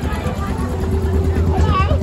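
Engine of an antique-style open motor car (horseless carriage) running as it drives past close by, a low pulsing engine note, with crowd voices around it.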